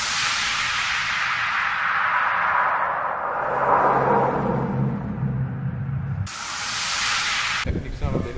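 Whoosh transition effect: a long hiss that sweeps steadily down in pitch over about five seconds, with a low hum under its second half, then a second short burst of high hiss near the end.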